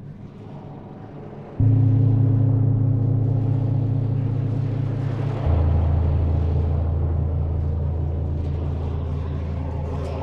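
Dark ambient drone music made from electronically processed gong tones: a deep drone, with a loud low tone coming in suddenly about a second and a half in and a second, lower tone about five and a half seconds in, each fading slowly over a hiss.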